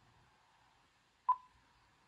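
A single short beep about a second in, against near silence: the keypress beep of the KeyPress OSD shortcut-display software, sounding as a keyboard shortcut is pressed.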